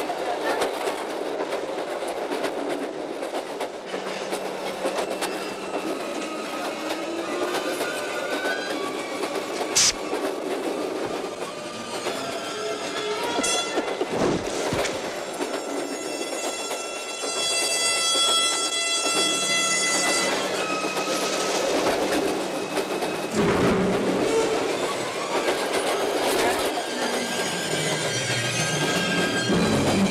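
Passenger train running, heard from inside the carriage: a continuous rumble of wheels on the rails. A sharp click comes about a third of the way in, and a high, steady ringing tone with several pitches sounds for a few seconds around the middle.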